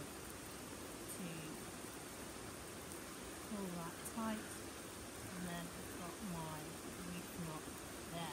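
Faint, murmured voice fragments, a few broken half-words under the breath, over a steady hiss of light rain.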